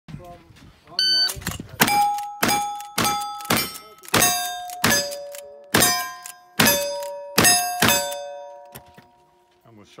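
A shot timer beeps once about a second in, then a brass-framed lever-action rifle fires ten quick shots over about six seconds. Each shot is followed by the ringing of a struck steel plate target.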